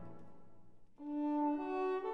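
Background music: a chord dies away, then a bowed string melody enters about a second in.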